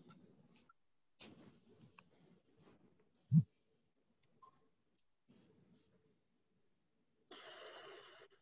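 Faint rustling and handling noise from a microphone being handled and swapped because it was cutting out. The noise cuts in and out, with one sharp thump about three and a half seconds in.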